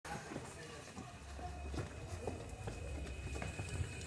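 Hurried footsteps of a group of people on a concrete alley, an irregular run of knocks and scuffs over a low rumble from the moving handheld microphone.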